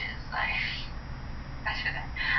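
Brief, faint snatches of a woman's voice playing from a phone's small speaker, over a steady low hum.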